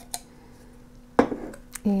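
Folded paper slips shifting in a glass jar, then a single sharp knock about a second in as the glass jar is set down on a wooden table, followed by a light paper click.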